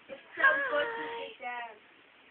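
A young girl's voice singing out a held note for about a second, followed by a shorter second sung sound.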